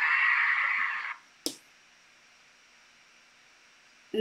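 Concert fancam audio playing back stops about a second in. One short click follows, then silence.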